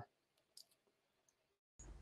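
Near silence in a video-call audio feed, with one faint click about half a second in.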